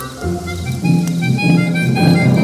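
Harmonica playing a tune of held notes and chords, growing louder about a second in.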